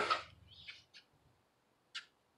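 Metal lid of a gas grill shutting with a sharp clunk right at the start, followed by a few faint, short, high chirps.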